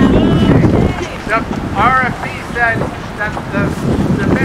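Wind buffeting the microphone as a low rumble, loudest in the first second, over faint, broken speech from a distance, heavily boosted in volume.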